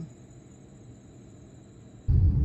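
Faint, steady night ambience: a high insect chorus over a low hum.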